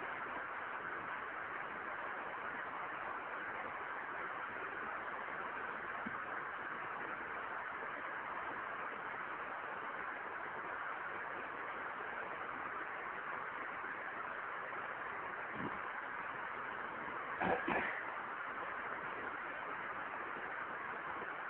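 Steady hiss of a low-fidelity lecture recording in a pause between words, with a brief faint sound a little before the end.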